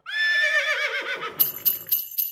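A horse whinnies once, a wavering call that fades over about a second. Then bells begin jingling in an even rhythm, about four strokes a second.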